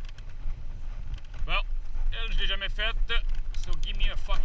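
Mountain bike rolling down a dirt trail with wind rumbling on the camera microphone. About a second and a half in, a person's voice calls out briefly, with no words made out, for a second or two.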